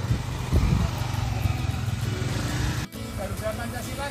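Motorcycle engine running with wind noise as it is ridden. After a break near three seconds, children's voices call out in short high cries.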